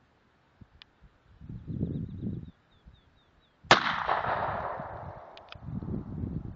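A single shot from a Ruger 9mm pistol about two-thirds of the way in, with a sudden crack followed by a long echo that dies away over about two seconds.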